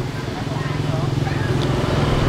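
An engine running steadily with a low, even hum, under faint background voices.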